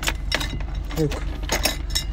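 A bunch of keys with a key-ring bottle opener jangling and clinking in a few short taps as the opener is fitted against the metal cap of a glass malt-drink bottle. Under it, the car's engine hums steadily at idle.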